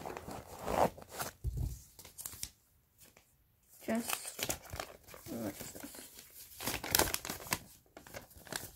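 Paper rustling and crinkling as a small folded sheet of lined notebook paper is taken from a backpack pouch and unfolded. There is a quiet pause in the middle, and the crinkling is loudest near the end.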